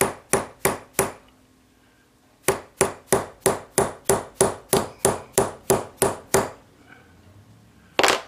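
Small brass-headed hammer tapping a stake in a staking tool, driving a clock arbor out of its wheel. Light, quick taps, about three a second: four, then a pause of a second or so, then a run of more than a dozen.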